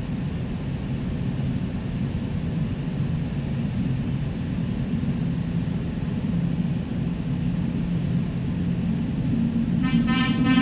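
Low, steady rumble of an approaching Seoul Metro Line 2 subway train in the tunnel, growing slowly louder. Right at the end a station chime starts, opening the train-approach announcement.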